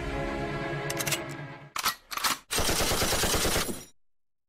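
Background music, then about two seconds in, two short gunshot-like bangs followed by a burst of machine-gun fire lasting just over a second that fades out.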